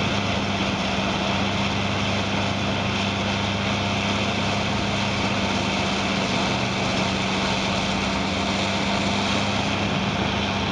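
Vermeer HG4000TX horizontal grinder running steadily under load while regrinding material. Its diesel engine and grinding mill make an unbroken low hum under a dense, even roar.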